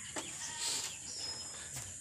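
Faint rural outdoor ambience, with distant bird calls over a low steady background.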